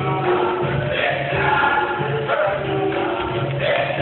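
Capoeira roda music: a group singing a song in chorus over a steady, evenly repeating low beat.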